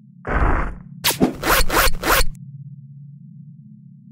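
Cartoon fight sound effects: a half-second rasping swish, then a quick run of about five sharp hits, over a steady low hum.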